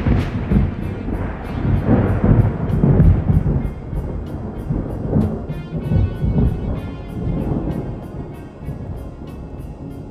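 Thunder rolling and rumbling deep and loud, slowly fading over several seconds, over calm instrumental music.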